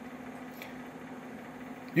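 Steady low hum with a faint droning tone from a running Compaq Portable computer, its cooling fan and power supply turning over.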